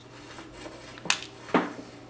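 Two sharp clicks about half a second apart, near the middle: small hard objects being handled on a desk, over a faint steady hum.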